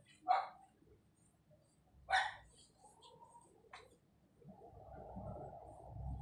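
A dog barking a few short, separate barks about two seconds apart, followed near the end by a longer drawn-out sound.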